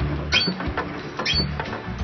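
Playground ride squeaking rhythmically, about once a second, as it moves back and forth, with low rumble from wind or handling on the phone's microphone.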